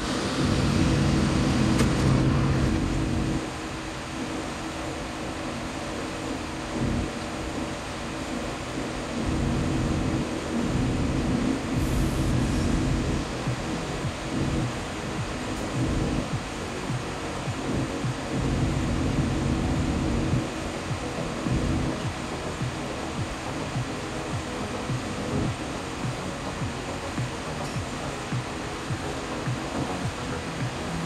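DEVELON excavator's diesel engine running steadily, heard from the operator's cab, growing louder under hydraulic load three times: at the start, about ten seconds in and about eighteen seconds in.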